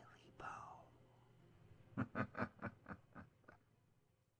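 A whispered voice: a breathy syllable at the start, then a quick run of about seven short whispered pulses around the middle.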